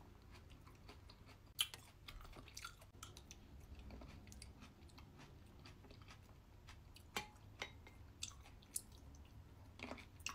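Close-up chewing of a mouthful of crispy red grapes in a thick, creamy dessert: soft, faint mouth sounds broken by sharp, irregular crunches, the strongest about a second and a half in.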